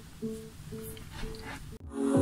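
JBL Horizon 2 speaker sounding its Bluetooth pairing tone: a short plucked-sounding tone repeated a few times at even spacing, cut off abruptly near the end.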